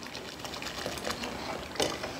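Salt poured from a bowl into a pot of hot braising stock: a steady, fine hiss of grains hitting the liquid, with a short louder burst near the end.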